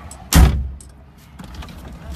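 A single loud thump about a third of a second in, dying away quickly, with a low steady background after it.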